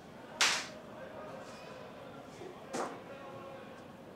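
Two short papery swishes about two seconds apart, the first the louder: sheets of a document being picked up and handled.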